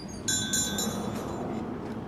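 Glass shop door being pushed open, with a brief jingle of high ringing tones about a quarter second in, typical of a door bell or entry chime, over steady street noise let in through the doorway.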